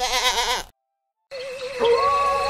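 Cartoon soundtrack: a short warbling cry of about half a second, then after a brief gap a wavering electronic tone over background music.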